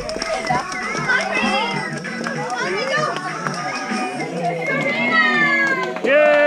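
Overlapping chatter of many young children and adults, no single voice standing out, with held musical notes mixed in.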